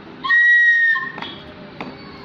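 A child blowing one steady, shrill note on a toy whistle, lasting under a second.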